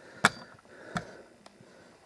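Cardboard product box being handled and turned over: a sharp tap about a quarter second in, then a softer knock around a second in and a faint click.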